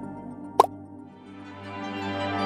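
Soft ambient background music fading down, broken a little over half a second in by a single short water-drop plop sound effect with a quick upward pitch. New background music swells toward the end.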